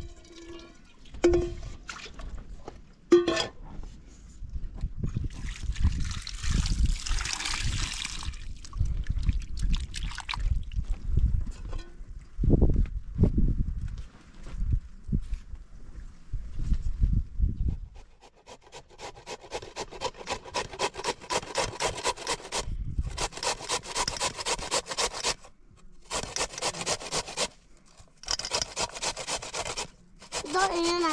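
Water running from a garden hose into an aluminium pot for a few seconds early on, with low rumbling and knocks. From about two-thirds of the way in, raw potato grated on a hand-held metal grater: quick rhythmic rasping strokes, several a second, broken by short pauses.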